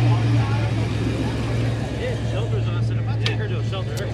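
A car engine idling nearby with a steady low hum, under the faint chatter of people's voices.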